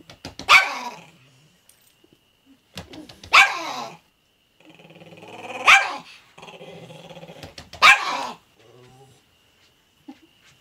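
A chihuahua barking four times, about two seconds apart, with growling in between, warning off another dog.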